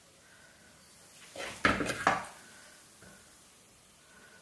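Spoon scraping and knocking against a clay pot and a ceramic plate while serving mashed tapioca, with two sharp knocks about half a second apart in the middle.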